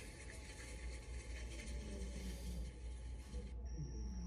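Faint steady rushing sound of a tablet pottery app's kiln-firing effect over a low hum. It cuts off suddenly about three and a half seconds in, and a thin high tone follows.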